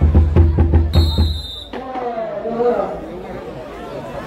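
A drum beating fast and evenly, about four strokes a second, with a shrill whistle blast over its last half-second. The drumming cuts off suddenly about a second and a half in, and voices and crowd chatter follow.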